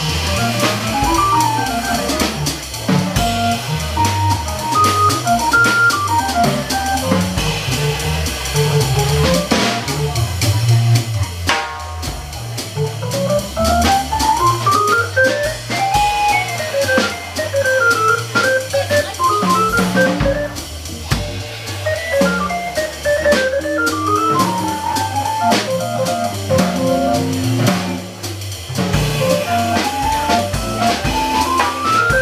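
Jazz organ trio playing live: electronic organ, electric guitar and drum kit, with a low bass line under the melody and steady cymbal and drum work. Fast runs sweep up and down in the middle of the passage.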